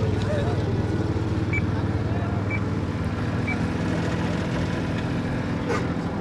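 A small car engine idling steadily. Three short, high beeps sound about a second apart early in the clip.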